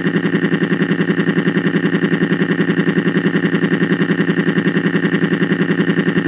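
Cartoon crying sound effect: one long, steady-pitched wail that throbs in a rapid, even rhythm.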